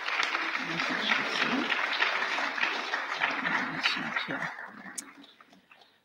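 Audience applauding, steady at first and dying away about four to five seconds in.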